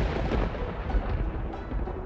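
Thunder sound effect, loudest at the start and slowly dying away, over background music.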